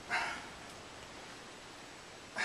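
A short, sharp exhale, once, just after the start, as he pulls a rubber resistance band apart on a reverse-fly rep.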